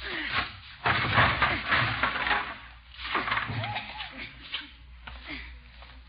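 Radio-drama sound effects of a boy clearing out a garage: rough scraping and clattering of things being moved about, strongest in the first few seconds, mixed with short wordless vocal noises.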